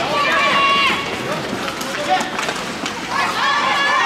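High-pitched shouting voices during a youth ice hockey game, with a single sharp knock about two seconds in.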